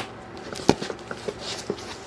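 Cardboard flaps of a damp shipping box being pulled open and folded back by hand: light rustling with a sharp knock a little under a second in and a few fainter ticks.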